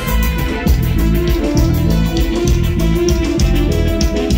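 Live band playing an instrumental passage of a Mixtec chilena on electronic keyboard, drum kit and guitar, with a quick steady beat.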